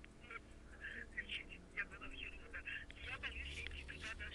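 A faint, thin voice of the other party on a phone call, heard through the handset's speaker. It comes in short broken phrases, squeezed and tinny, and the words can't be made out.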